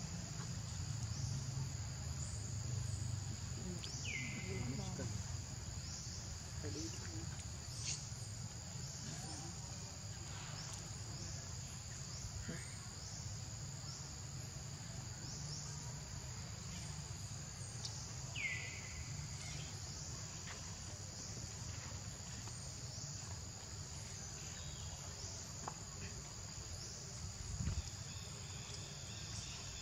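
A steady high-pitched insect chorus with a faint pulse about once a second, over a low rumble of background noise. Twice a short falling whistle cuts through, a few seconds in and again past the middle.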